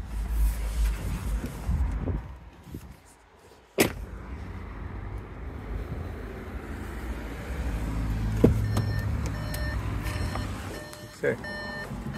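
A car door opening with a click, followed by the car's repeating electronic warning chime while the door stands open. Earlier there is a low rumble, a sharp click about four seconds in, and a low steady hum.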